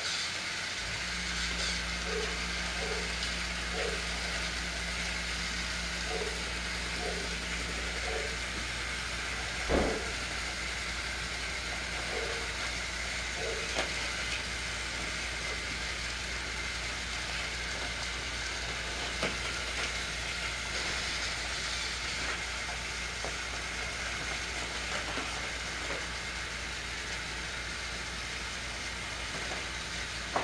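Battery-powered Thomas TrackMaster toy engines running around plastic track: a steady whirring rattle of small motors and wheels, with a low hum coming in about a second in and one sharp plastic click near the middle.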